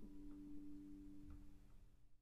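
The last note of a solo acoustic guitar ringing on faintly and dying away, with a few soft ticks.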